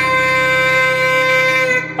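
Party horn blown in one long, steady, buzzy note that cuts off near the end.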